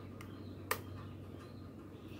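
A single sharp click about two-thirds of a second in, over a faint steady low hum.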